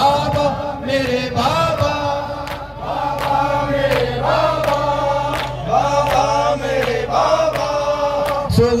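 Men's voices chanting a Shia noha (mourning lament) in a slow melody, with sharp hand beats of matam on the chest at a steady pace of about two a second.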